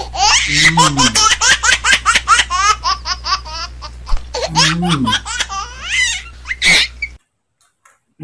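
Rapid, high-pitched laughter in quick repeated bursts over a steady low hum, edited in as a laugh sound effect; it cuts off abruptly about seven seconds in.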